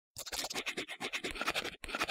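Drawing sound effect: a pen scribbling in quick, uneven scratchy strokes, several a second, starting a moment in.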